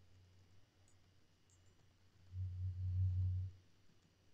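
A steady low hum that swells for about a second, around two and a half seconds in, into a much louder low buzz, then drops back.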